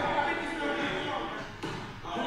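A person talking, with a single thump about one and a half seconds in.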